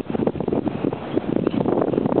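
Wind buffeting the camera microphone in irregular gusty rumbles and pops.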